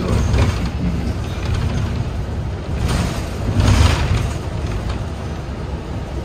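Interior of a moving city bus: steady low engine and road rumble, with a brief swell of noise about halfway through.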